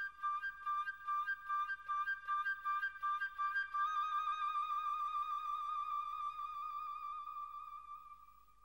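Electronic synthesizer music: a high lead voice plays a quick run of repeated notes, then holds one long note with vibrato.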